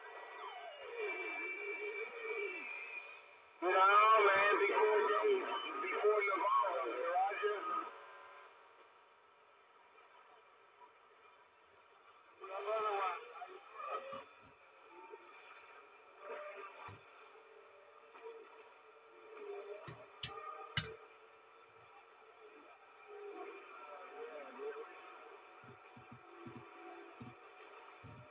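CRT SS-9900 CB radio on channel 6 AM (27.025 MHz) playing voices from other stations through its speaker, loudest in the first eight seconds, with steady hiss between transmissions. A couple of sharp clicks come about twenty seconds in.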